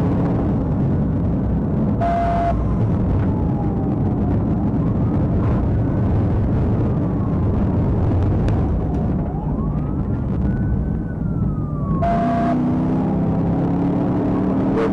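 Police car siren wailing in slow rising and falling sweeps, heard from inside the pursuing patrol car over heavy engine and road noise at highway speed. Two short beeps sound, one about two seconds in and one near the end.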